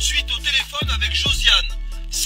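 Hip hop music with rapped vocals over a deep bass, its notes dropping steeply in pitch twice.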